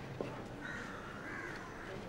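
Faint crow cawing, drawn out through the middle, with a single light click near the start.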